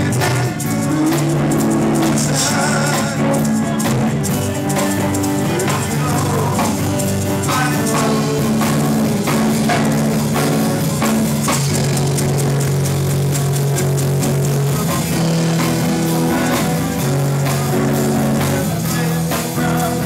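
Live rock band playing loudly, with electric guitars and a drum kit.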